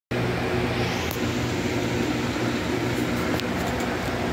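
Steady machine hum, a low drone with several held tones that does not change, with a couple of faint clicks.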